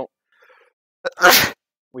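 A single loud sneeze about a second in, a short sharp burst of breath.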